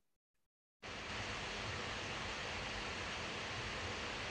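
Steady hiss of background noise from an unmuted video-call microphone. It cuts in suddenly about a second in, after dead silence.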